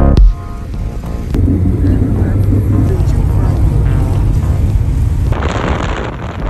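Cabin noise of a Volkswagen car driving in traffic: a steady low engine and road rumble. About five seconds in it gives way to wind buffeting on the microphone.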